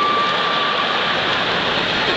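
Large audience laughing and applauding after a punchline. One long high whistle from the crowd stops partway through.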